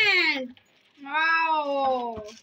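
Two drawn-out, high-pitched vocal exclamations of excitement, like a long "wooow", each rising and then falling in pitch, with a short pause between them.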